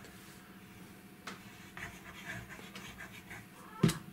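Liquid craft glue squeezed from a plastic bottle onto card, with faint, irregular puffs and squelches. A single sharp knock comes just before the end.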